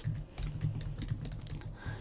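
Computer keyboard typing: a quick run of keystrokes as a short line of text is typed.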